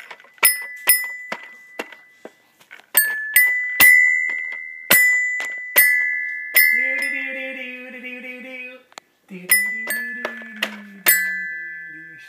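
Toy xylophone struck about a dozen times at an uneven pace, each hit ringing high and dying away, mostly on the same two or three notes. A voice holds a tone for about two seconds in the middle, and a voice is heard again near the end.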